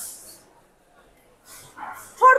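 A woman's speech trailing off, then about a second of near silence, then a short faint voice-like sound near the end.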